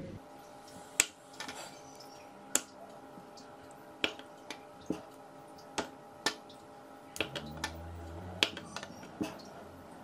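A kitchen knife slicing a sticky rice cake (bánh tét) and knocking down onto a wooden chopping board: about ten sharp knocks, roughly one a second.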